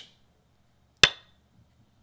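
Go client's stone-placement sound effect: one sharp clack of a stone set down on the board, ringing briefly, as the opponent's move is played.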